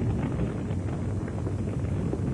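House fire burning: a steady low rumble with faint crackles.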